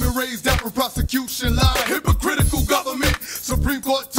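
Hip hop track: rapped vocals over a beat with a heavy bass drum.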